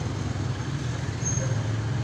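Steady low background rumble with no speech.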